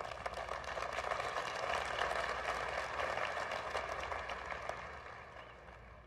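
Audience applauding, a dense patter of many hands clapping that swells and then dies away over about five seconds.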